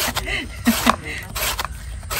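A blade slicing through a raw banana blossom, a series of crisp shaving strokes a few tenths of a second apart as thin rings are cut off.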